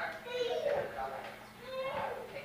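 Indistinct chatter of several voices, including children's voices, with no clear words.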